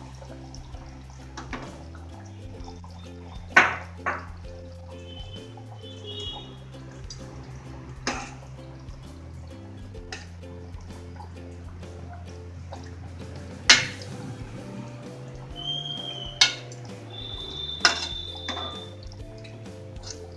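Background music with steady low notes, over a steel ladle clinking against a metal cooking pot while stirring fish gravy: about six sharp clinks, the loudest about two-thirds of the way through, some followed by a short metallic ring.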